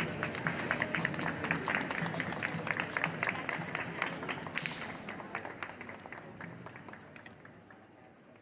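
Small crowd clapping, quick irregular hand claps that thin out and fade away gradually.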